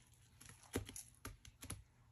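A hand squeezing and crumbling a clump of damp, foamy powder-detergent paste, giving a quick, uneven run of small crisp crackles and clicks.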